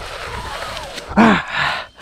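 A man breathing out hard, then about a second in a short, falling sigh of effort as he hauls a big fish up the bank.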